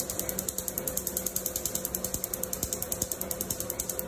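Tattoo-removal laser handpiece firing on skin, a sharp snap about ten times a second in a steady rhythm, over a steady hum from the laser unit.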